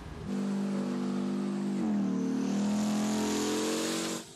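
Tank engine running steadily. About two seconds in, its pitch dips and then climbs as it revs, with a rising hiss over the top.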